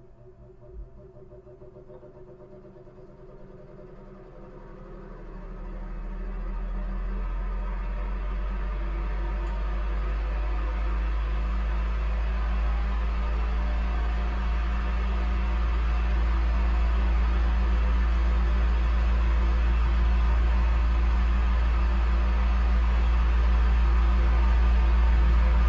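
Electric fan running: a steady low hum with an airy hiss, fading up from quiet about five seconds in and growing slowly louder after that.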